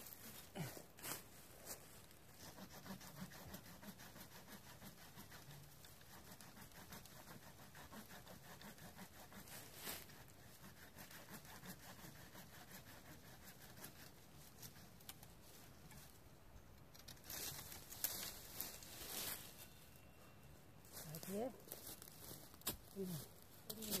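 Faint rustling, cracking and snapping of dry ume branches and twigs as they are cut and pulled out of the tree, with scattered sharp clicks. Louder spells of crackling come about 17 to 19 seconds in and again near the end.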